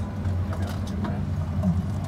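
Steady low drone inside the cabin of a Boeing 737-800 as the jet creeps into its gate, with murmuring passenger voices and a few small clicks over it.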